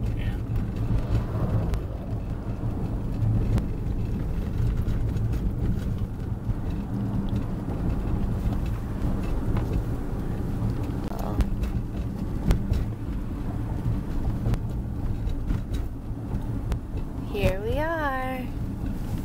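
Car driving on a road, heard from inside the cabin: a steady low rumble of engine and tyres. A person's voice comes in briefly near the end.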